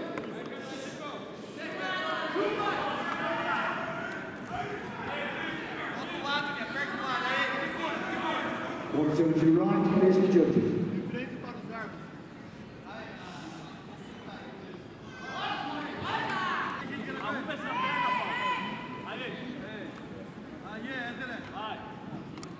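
Voices talking and calling out in a large, echoing hall, loudest about ten seconds in.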